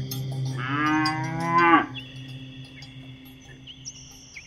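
A cow moos once, a single call of just over a second that swells and then drops off. Steady high chirping runs behind it.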